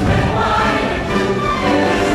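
Loud choral music: a choir singing held notes over a full musical accompaniment, the patriotic soundtrack of a fireworks show.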